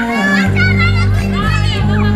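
Pop love song with a steady bass line, mixed with high-pitched children's voices shouting and calling while they play in a swimming pool.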